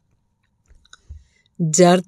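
A pause in a woman's Punjabi narration: near silence with a few faint mouth clicks, then her voice resumes narrating about a second and a half in.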